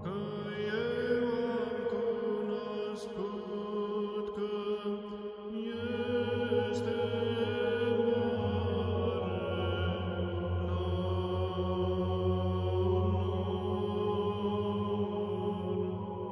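Background music: slow chanting on long held notes, with a low steady drone that comes in about six seconds in.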